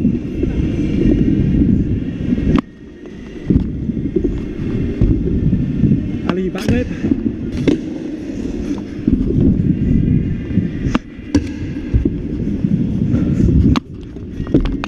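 Stunt scooter wheels rolling over a concrete skatepark surface, a continuous low rumble broken by irregular sharp clacks of the wheels and deck hitting edges and landing. The rumble drops away briefly about two and a half seconds in and again just before the end.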